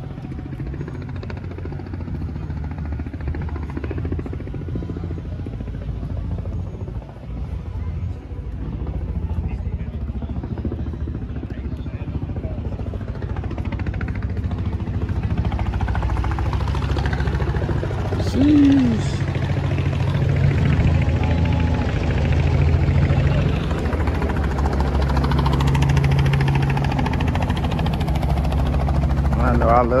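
A steady low engine drone runs throughout and grows a little stronger about halfway through, with voices in the background.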